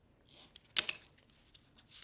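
An X-Acto craft knife drawn along a ruler through duct tape on a cutting mat: a brief scratchy slice just before one second in, followed by a few faint clicks.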